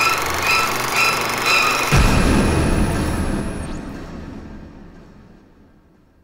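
Closing logo sting: a dense, noisy musical sound with tones pulsing about twice a second, then a deep boom about two seconds in that slowly fades away.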